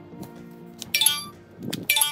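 Smartphones' glass and metal bodies clinking together as they are picked up and handled: two sharp clinks about a second apart, with a short low rub of handling between them.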